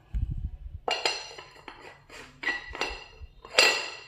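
Porcelain bowl clinking against the porcelain plate it sits upside-down on as it is handled, several separate ringing clinks with the loudest near the end, after a few dull knocks at the start.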